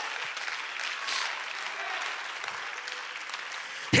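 Church congregation applauding, a steady clapping that holds at an even level.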